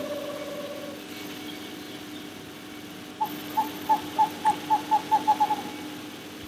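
A faint steady hum under a held tone that fades out in the first second. About halfway in comes a run of about a dozen short high pips, quickening, that stops a little before the end.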